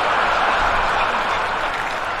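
Large theatre audience at a stand-up show applauding in reaction to a punchline, a steady wash of clapping that eases slightly toward the end.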